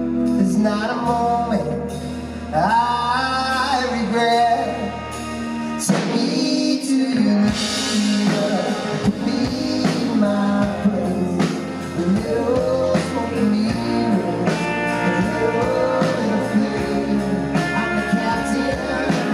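Live rock band playing a slow song, with a male lead voice singing over electric guitar (a Fender Telecaster) and the band backing it.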